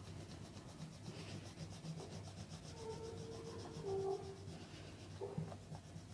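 Oil pastel rubbed back and forth on paper, faint scratchy colouring strokes. A brief faint tone sounds about halfway through.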